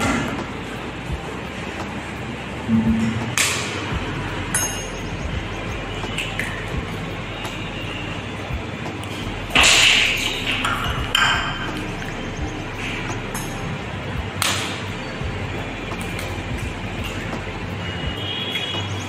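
Eggs cracked against the rim of a stainless steel mixing bowl: several separate sharp clinks, the loudest about ten seconds in.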